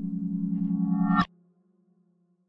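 Granular synth note from Reason's Scenic instrument playing a kalimba sample: a steady pitched tone with a rich stack of overtones that grows a little louder, then cuts off suddenly with a click a little past halfway. A faint low tone lingers briefly before silence.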